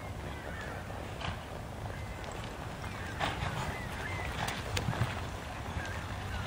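Cutting horse's hooves thudding and scuffing in the arena dirt as it works a cow, with a few sharp hoof strikes between about three and five seconds in, over a steady low rumble and short high chirps.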